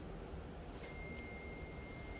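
A single steady, high-pitched electronic beep starting a little under a second in and lasting about a second and a half, over faint room noise.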